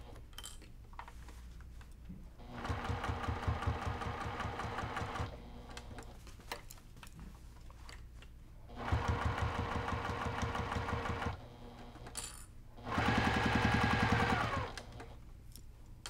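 Electric sewing machine stitching binding down through quilted fabric in three short runs with pauses between, the last run the loudest, the needle going at a slow, even pace.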